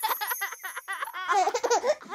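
Cartoon children's voices laughing and giggling in quick short bursts, louder from about halfway through.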